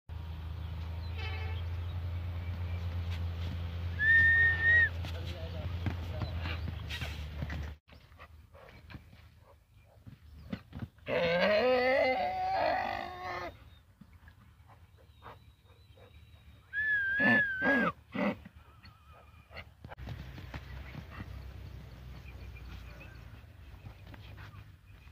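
A donkey braying once: a loud, pitched call lasting a couple of seconds in the middle. Around it are a low rumble in the first third and two short, high, wavering whistle-like tones.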